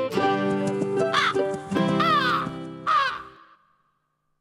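A short plucked-string jingle with three crow caws over it, about a second apart, each falling in pitch; the music fades out after the third caw.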